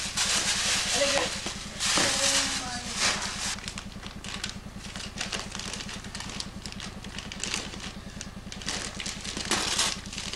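Wrapping paper and tissue paper rustling and crackling as a Christmas present is handled and unwrapped, busiest in the first few seconds, over a steady low hum.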